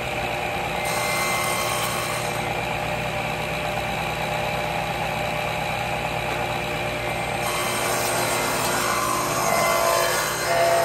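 Table saw running steadily at full speed, a continuous whirring with a low motor hum. Near the end the sound shifts a little as the wood is fed toward the blade.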